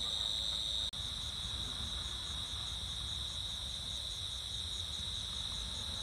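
Crickets chirping steadily in a continuous high-pitched drone, with a faster pulsing chirp above it. The sound drops out for an instant about a second in, then carries on.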